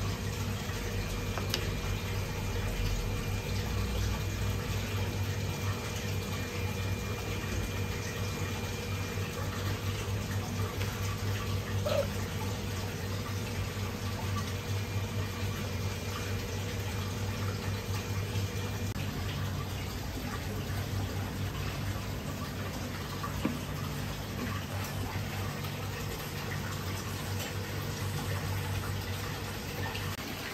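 Steady running water with a low, constant machine hum. There are a couple of light knocks, one about twelve seconds in and another past the twenty-second mark.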